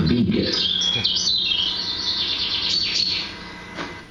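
Birds chirping in a run of wavering, high twittering calls on a nature documentary's soundtrack, played back through room speakers; the sound cuts out shortly before the end.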